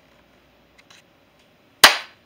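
Camera being set down on a hard surface: a few faint handling clicks about a second in, then a single sharp, loud knock near the end.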